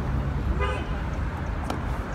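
Road traffic rumbling past, with a brief car-horn toot about half a second in and a single sharp click near the end.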